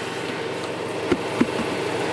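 Toy hauler's onboard generator running steadily, with two light knocks a little past the middle.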